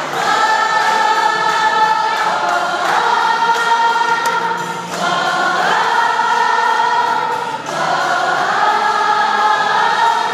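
A group of voices singing a Christian song together with music, in long held notes that break into phrases every two to three seconds.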